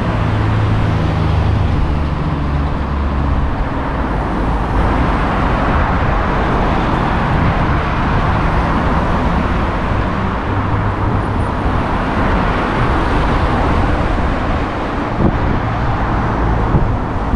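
Street traffic: motor vehicles driving past, with a low engine hum in the first few seconds and a swell of road noise through the middle.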